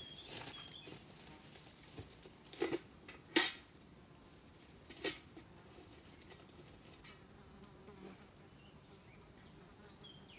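A few brief rustles and knocks from someone pushing through brush and working low at a wire fence, the loudest a little over three seconds in, over faint insect buzzing.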